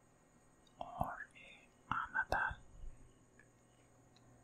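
Close-miked, breathy male whispering, unintelligible, in two short bursts about one and two seconds in, with sharp wet mouth clicks inside them.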